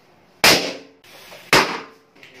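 Balloons bursting: two sharp bangs about a second apart, each dying away quickly.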